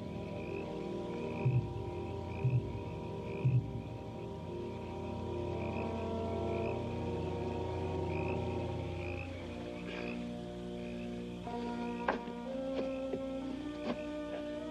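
Orchestral film score of long held chords over a pulsing chorus of frogs, with a chirp about twice a second and three deep beats about a second apart in the first few seconds. About two-thirds of the way in the low chords drop away and higher sustained notes take over, with a few sharp plucked notes near the end.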